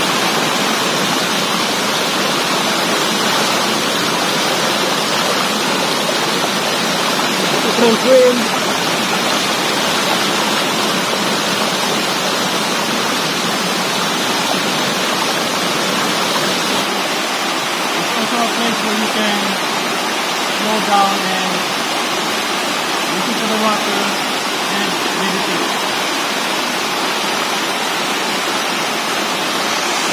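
Steady rushing of a small waterfall pouring into a rock pool, even and unbroken throughout. Short bits of a voice rise over it about eight seconds in and a few more times around twenty seconds in.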